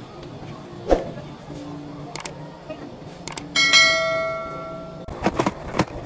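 Two sharp clicks about a second apart, then a bell ding about three and a half seconds in that rings out and fades over about a second and a half: a subscribe-button animation's click-and-bell sound effect. Near the end comes a crackling rustle of packaging being handled.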